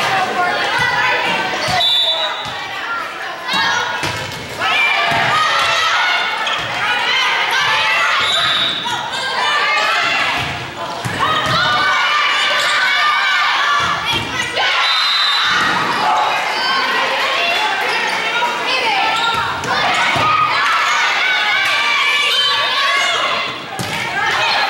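Indoor volleyball rally in a gym: the ball thudding off hands and arms now and then, under continual voices of players and spectators calling out, echoing in the hall.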